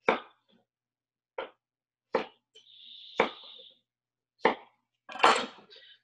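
Chef's knife chopping sweet potato on a wooden cutting board: five separate sharp knocks roughly a second apart, with a short scrape of the blade across the board in the middle. About five seconds in comes a longer rustling clatter as the cubes are gathered up. The gaps between strokes are dead silent, as on a video call's gated audio.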